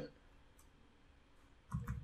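Mostly near silence, with a few faint computer keyboard keystrokes near the end as code is typed.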